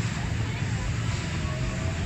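Outdoor amusement park ambience: a steady low rumble with a faint hum coming in near the end.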